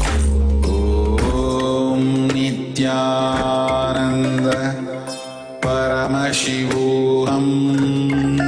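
Devotional mantra chant sung to musical accompaniment: long held notes that glide in pitch, with a brief drop in loudness about five seconds in.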